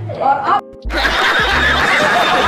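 Group laughter and chatter over background music. A little past halfway the sound drops out briefly at an edit, then picks up again with a crowd of people laughing over the music.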